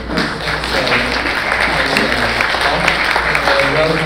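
Audience applauding, starting suddenly and holding steady, with voices mixed in.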